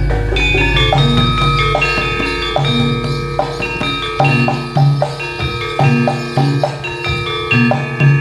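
Javanese gamelan ensemble playing jaranan dance music: struck metallophone keys and gongs ringing in quick, changing notes over a repeating low drum beat.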